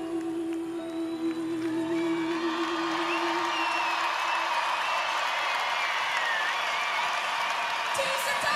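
A woman's voice holding a long final sung note with vibrato, which fades out about four and a half seconds in. Under it, a large audience's cheering and applause swells up from about two seconds in, with high whistles, and takes over.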